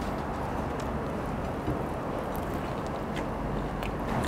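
Steady city street background noise while a man bites into and chews a cheeseburger, the chewing close to his lapel microphone.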